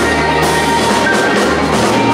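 Live rock band playing an instrumental passage: drum kit beating out a steady rhythm under electric guitar, bass and sustained organ chords.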